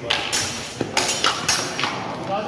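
Spear shafts and steel bucklers knocking and clacking against each other in a quick close exchange: a rapid series of six or seven sharp hits.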